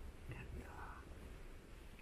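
Faint whispering in a hushed room, with a few soft whispered syllables just under a second in.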